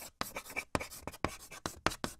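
Chalk writing on a blackboard, a sound effect: a quick run of short, irregular strokes.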